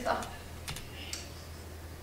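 A pause in the talk: a low steady hum with a few short, faint clicks.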